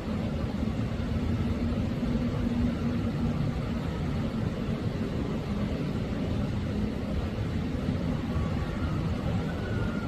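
Steady low rumbling background noise outdoors, with a faint hum in roughly the first three seconds.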